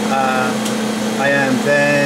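Speech over the steady hum of an Edwards XDS10 dry scroll vacuum pump running as it evacuates the wafer bonder's chamber.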